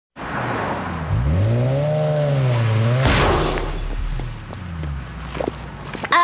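Car driving by: the engine revs up about a second in and holds, a short rushing burst comes about halfway through, then the engine settles to a lower, falling note with a few faint knocks.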